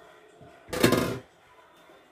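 A single short thump about a second in.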